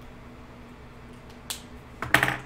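Quiet room tone with a steady low electrical hum, and a single sharp click about one and a half seconds in.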